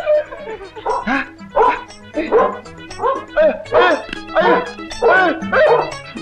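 A dog barking over and over, about two barks a second, with background film music underneath.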